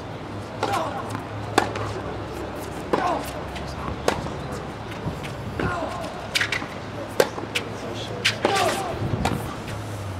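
A tennis rally: a ball struck by rackets and bouncing on a hard court, sharp pops about every second or so, with short grunts from the players on some of the strokes.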